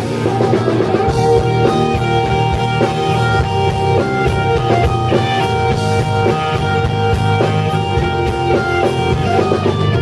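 A rock band playing live, led by an electric guitar over a drum kit. A long note is held from just after the start until near the end while shorter notes change beneath it.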